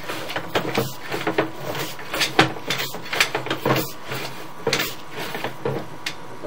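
Sewer inspection camera's push rod being fed off its reel into the line, with irregular clunks and rattles several times a second.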